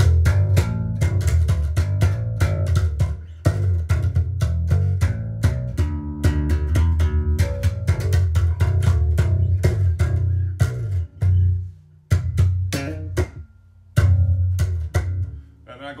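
Five-string electric bass guitar played fingerstyle through an amp: a fast run of plucked notes with sharp string attacks over a deep, full low end, broken by two short pauses near the end.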